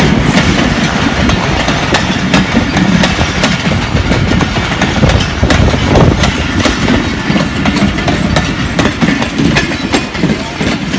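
Passenger train coaches rolling past close by: a steady rumble of wheels on rail with a rapid, uneven run of clicks as the wheels cross the rail joints.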